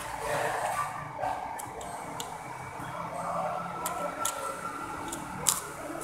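Close-up chewing and mouth sounds of a person eating noodles and side dishes by hand, with a few sharp smacks or crunches, the loudest about five and a half seconds in.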